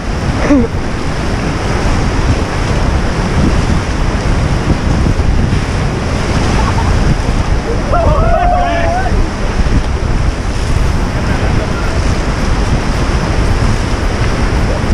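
Loud rushing whitewater of a Ganges river rapid, heard close from a raft being paddled through it, with wind buffeting the microphone. A voice shouts briefly about half a second in and again near the middle.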